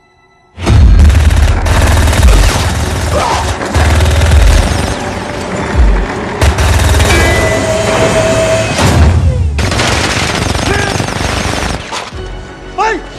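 Loud action-film soundtrack: music mixed with dense action sound effects and heavy bass booms, cutting in suddenly about half a second in after near silence.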